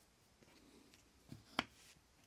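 A small washer set down on a wooden workbench: a sharp light tap about one and a half seconds in, with a fainter tap just before it.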